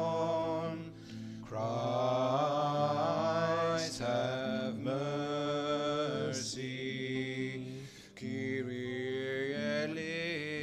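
Slow sung devotional chant: long held vocal notes over a steady low sustained accompaniment, in phrases separated by short pauses.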